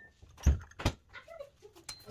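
Metal spoon knocking against spice jars and a plastic mixing bowl while spices are spooned in: two knocks a little under half a second apart, with lighter clicks around them.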